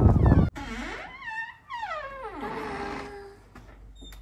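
A door creaking open: a long, wavering squeak that glides up and down in pitch for a few seconds, settling into a steadier tone near the end. A brief burst of louder noise cuts off about half a second in.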